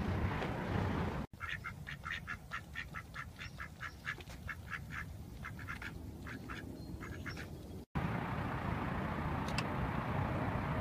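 Mallard ducks quacking in a quick run of short calls, about three or four a second, starting about a second in and cutting off suddenly near the end. A steady low rumble of noise comes before and after.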